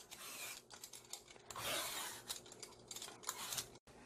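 A hand vegetable peeler scraping long strips of tough skin off an overripe yellow cucumber (nogak), in a few rasping strokes with short gaps between them.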